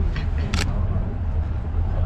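Steady low rumble inside a moving aerial tramway cabin, with one brief sharp noise about half a second in.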